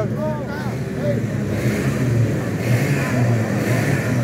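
Steady low drone of kart engines running, with a brief voice near the start.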